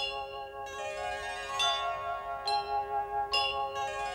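Title-card music: bright chime-like notes struck about once a second, each ringing on over a sustained chord.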